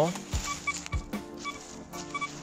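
Golden Mask 4 Pro 18 kHz metal detector in multitone mode giving short, irregular high beeps and a few low grunts as its coil sweeps over lumps of coke. These are false signals, interference from the coke with the ground balance set manually.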